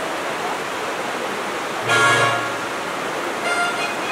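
Steady hiss with one loud, short pitched sound rich in overtones about two seconds in, and fainter pitched sounds near the end.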